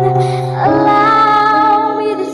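A young girl singing over musical accompaniment, holding long notes that change pitch about two-thirds of a second in.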